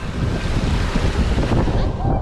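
Steady rush of water pouring out of water-slide outlets and splashing into a pool, with wind buffeting the microphone.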